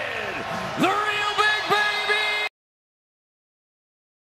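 A voice calling out in long, drawn-out held syllables, in the style of a ring announcer. It cuts off abruptly about two and a half seconds in, leaving dead silence.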